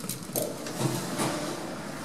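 Lift car doors starting to open: a few clunks from the door mechanism, the loudest about a second in, then a steady hum as the doors slide.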